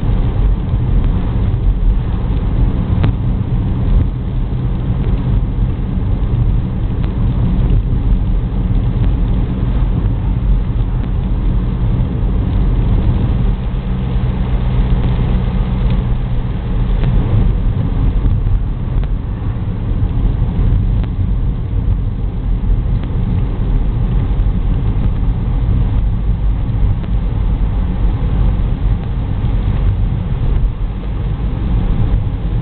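Car engine and road noise heard from inside the cabin while driving on a wet road: a steady low rumble.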